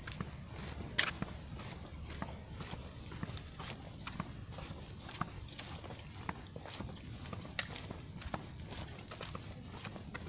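Footsteps on a concrete sidewalk at a walking pace: a run of sharp, irregular clicks and scuffs over a low street rumble.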